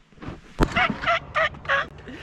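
A sharp knock, then a person laughing in four short, evenly spaced bursts.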